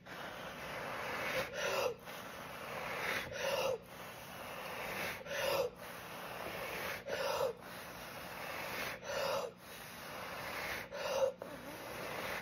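A person blowing hard through the mouth onto wet acrylic pour paint to push it out into a bloom: about six long breathy blows of a second and a half or so each, with a quick breath between them.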